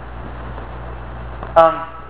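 A pause in a man's speech filled only by a steady low hum, then a drawn-out "um" near the end.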